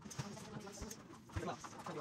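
Rubber balloons being blown up by mouth: faint puffs of breath, with two brief low sounds, one near the start and a slightly louder one about a second and a half in.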